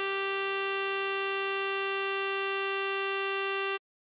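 Computer-generated tenor saxophone tone holding one long, perfectly steady note (written A5) over a sustained electric-piano chord in E-flat major. Both cut off abruptly near the end.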